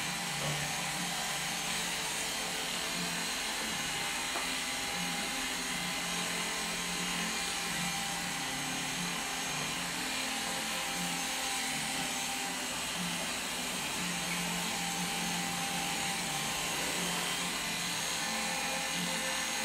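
Corded electric hair clippers running with a steady buzz, shaving hair short at the back and side of the head.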